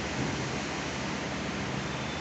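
Steady hiss of background noise, with no speech or distinct sounds.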